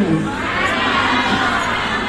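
Crowd of many voices talking and calling out at once, overlapping, with no single speaker standing out.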